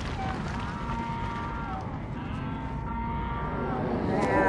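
Cattle mooing: several long calls in a row, each about a second and dropping in pitch at its end, over a low rumble.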